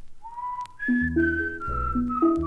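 A whistled melody: one pure note slides up and holds, then jumps higher and steps down note by note. The steel band comes in about a second in with bass notes and chords under it.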